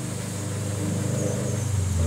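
Mains transformers, a 42 V and a 35 V unit wired in series, humming steadily at the 50 Hz mains frequency while they feed about 72 volts AC into a string of overcharged D-cell batteries, with a faint hiss above.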